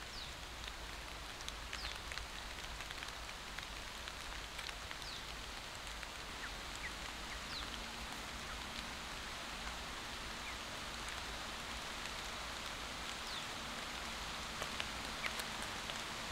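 Steady, even hiss of forest ambience, with short high chirps scattered throughout and a faint low hum joining about halfway through.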